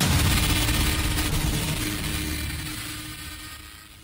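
Cinematic transition sound effect: a low rumbling hit that starts suddenly, with a faint steady tone in it, and fades away over about four seconds.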